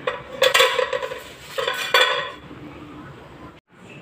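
A metal utensil scrapes and clanks against a metal cooking pot in two short bursts as a leaf-wrapped bollo is lifted out of the pot.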